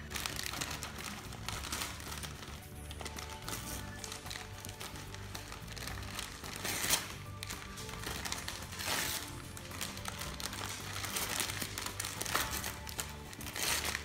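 Siberian husky ripping and crinkling gift wrapping paper with its teeth, in several sharp rustling tears, over steady background music.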